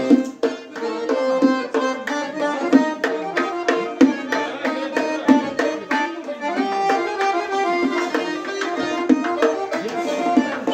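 Live folk music: an accordion playing a melody over hand drums beaten in a quick, steady rhythm.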